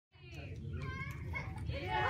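Young children's voices chattering and calling out together in a room.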